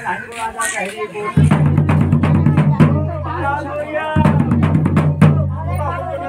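Dhol-style drum beaten in rapid, uneven strokes, over people's voices, with a steady low drone coming in about a second and a half in.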